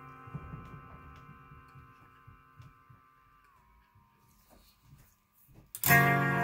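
A sustained chord through an effects pedal fading away, with soft knocks from the pedal's knobs being turned; about three and a half seconds in its pitch dips slightly. Just before the end a new chord is struck loudly.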